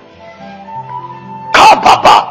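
Soft background music of held, sustained notes under a pause in a sermon. About a second and a half in, a loud burst of a man's voice breaks in.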